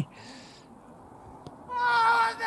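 Cricket appeal to the umpire: after a near-quiet stretch, a loud, long, held shout from the fielding side begins near the end.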